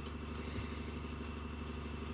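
Steady low background hum, with a faint click about half a second in as the folded rubber bicycle tube and steel hose clamp are handled.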